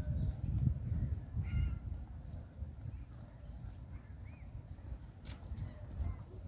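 Open-air ambience with an uneven low rumble on the microphone and a few faint bird calls, one about one and a half seconds in and another near four seconds, plus a couple of light clicks near the end.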